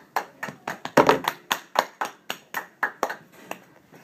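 Hand clapping as a short round of applause: sharp, even claps at about four a second, stopping shortly before the end.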